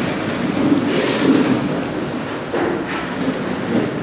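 A man speaking over a public-address system in a reverberant hall, his words blurred into a steady, muddy rumble by the echo.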